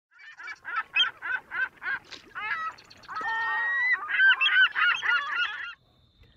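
Geese honking: a run of short honks about three a second, then one longer held call and a quicker burst of honks that stops just before the end.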